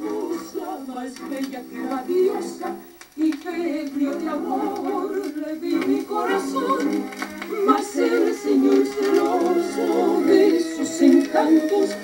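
A song with a singing voice playing from a vinyl record on a turntable through a home stereo system, heard thin with almost no bass.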